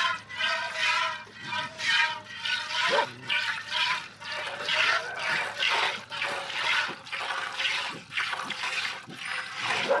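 Jets of milk squirting rhythmically into a steel bucket as a water buffalo is milked by hand, about two squirts a second. At first each squirt rings against the metal, then the jets turn to a softer frothy hiss.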